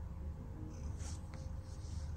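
Domestic cat purring, a steady low rumble with fine rapid pulsing, heard on its own without music.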